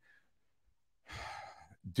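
A man's audible breath, about half a second long, a little past the middle of a pause in his talk, just before he speaks again.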